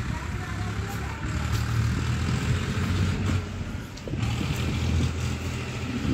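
A motor vehicle engine running steadily: a low hum over outdoor street noise.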